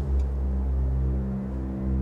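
Ominous soundtrack music: a low, sustained drone of several steady notes held throughout, with no other sound over it.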